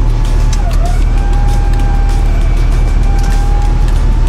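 Runva electric winch whining under load as it hauls a side-by-side and boat trailer up a soft sand bank, over a steady vehicle engine rumble. The whine wavers in pitch, dipping and rising again about a second in and once more near the end.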